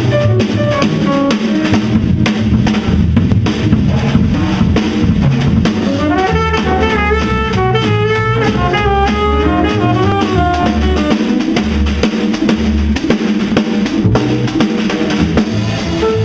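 Live jazz band playing, with the drum kit prominent: busy snare and cymbal work, bass drum and rimshots over low upright-bass notes. A quick run of single melodic notes comes through in the middle of the stretch.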